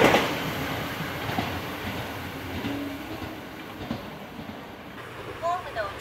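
A KTR700-series diesel railcar running away after passing close by: the engine and wheel noise is loudest at the start and fades over the first couple of seconds to a low rumble. A brief voice-like sound comes near the end.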